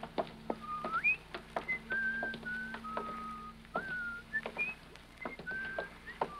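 A person whistling a slow tune: a string of held single notes with small slides between them. Light scattered clicks and a faint steady hum lie underneath.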